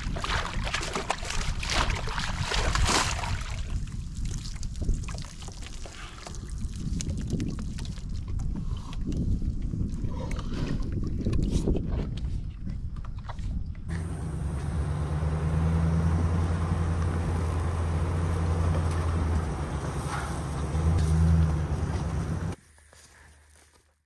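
American bison drinking from a plastic stock-water tank, the water sloshing and splashing as they push their muzzles in. About fourteen seconds in the sound changes abruptly to a steady low engine hum, which cuts off shortly before the end.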